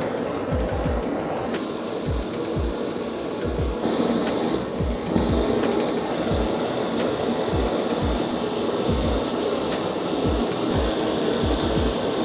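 Two handheld butane gas torches burning with a steady hiss, their flames playing on the neck of a glass bottle that is softening and glowing red; the hiss grows a little louder about four seconds in.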